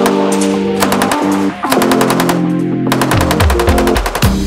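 Belt-fed machine gun firing fully automatic in several bursts of rapid, evenly spaced shots. The longest burst, lasting about a second, comes near the end.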